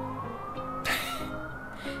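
A siren wailing, one slow rise in pitch that turns to fall near the end, over background music with sustained low notes. A brief breathy burst, like a laugh or exhale, about a second in.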